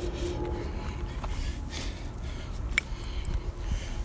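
Wind rumbling on a phone's microphone, with a few small knocks and clicks as the phone is handled.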